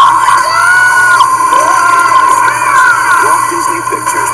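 Animated-film trailer soundtrack: music with short gliding cartoon vocal cries, over a steady high-pitched whine.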